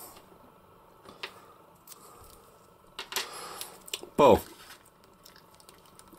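A few faint clicks and light rubbing of small plastic parts as toy nunchucks are handled and fitted into an action figure's hands.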